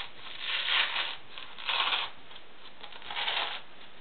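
Strong hook-and-loop (Velcro) fastener on the front flap of a nylon plate carrier being pulled apart, three short rips about a second apart.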